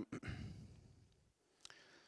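A man's breathy exhale like a short sigh, fading away over about a second, then near silence broken by a faint click near the end.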